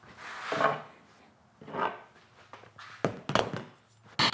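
Tools being picked up and set down on a work surface: three dull knocks and rustles, spaced a second or so apart.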